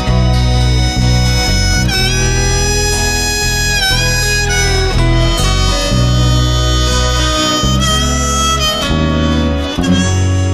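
Instrumental break of a folk-rock recording: a harmonica plays a melody of held notes that bend in pitch, over strummed guitar and a low bass line.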